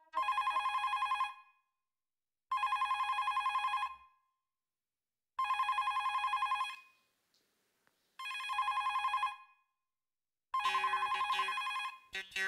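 Landline telephone ringing in a rapid electronic trill, five rings each about a second long with pauses of a second or two between them. The call goes unanswered.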